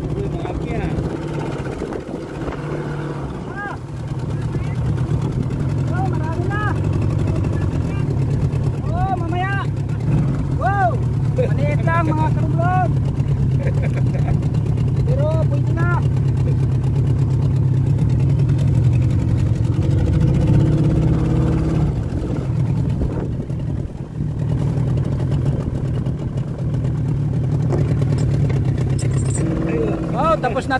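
Small fishing boat's engine running steadily at low revs while a crab net is hauled aboard by hand.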